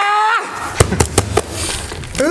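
A short, high-pitched cry of relief that breaks off just after the start, followed by a few scattered sharp hits and low rumbling movement.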